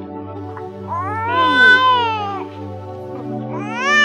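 A baby crying in two long wails, each rising and then falling in pitch, the second starting near the end, over steady background music.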